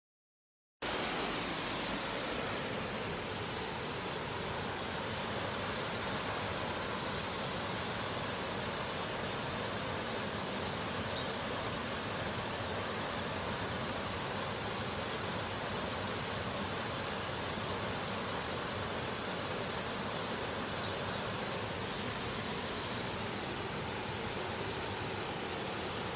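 Waterfall cascading over rock ledges into a pool: a steady rush of falling water, starting abruptly about a second in.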